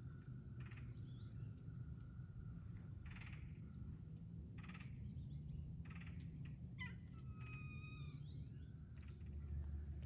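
Faint wild bird calls: a few short, harsh calls a second or two apart, then a longer pitched call about seven seconds in, over a low, steady background rumble.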